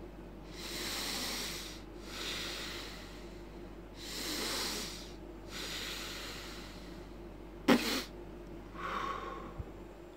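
Several long breaths in and out through the nose while the cheeks are held full of air, then a short, sharp pop of air let out of the puffed cheeks about three-quarters of the way through, followed by a softer breath. This is the 'breathe and pop' practice step for didgeridoo circular breathing, done without the instrument.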